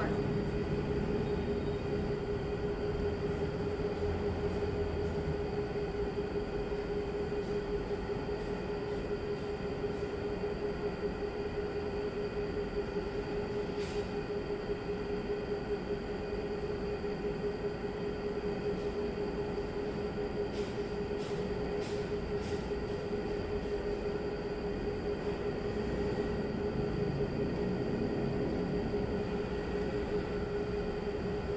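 A steady mechanical hum with one constant mid-pitched tone, unchanging throughout, with a few faint clicks about halfway and two-thirds of the way through.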